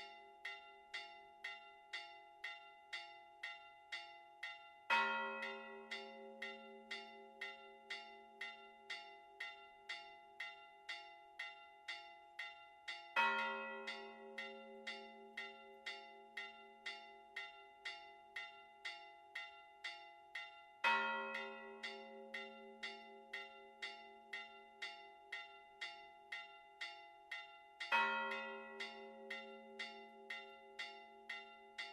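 Four church bells ringing a Maltese festive peal (mota): the smaller bells struck in a quick, steady pattern, about two strikes a second, each left ringing. The big bell strikes loud and deep every seven or eight seconds, four times.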